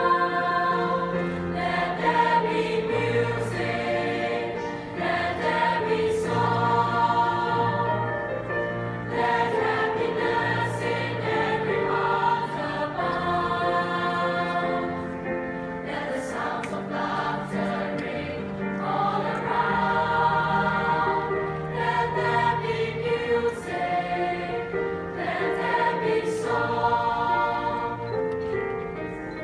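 Mixed choir of male and female voices singing in harmony, holding chords in several parts at once.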